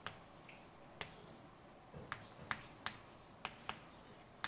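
Chalk tapping and clicking on a blackboard as someone writes: about eight sharp, irregularly spaced taps, faint against the room.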